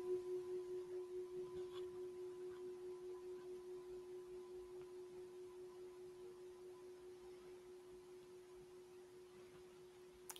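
A singing bowl struck once right at the start, its single steady tone pulsing with a slow wobble and slowly fading, with a fainter higher overtone above it. It marks the end of the meditation period.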